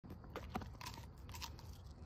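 A dog biting into a raw turnip: several sharp, irregular crunches as its teeth break into the root.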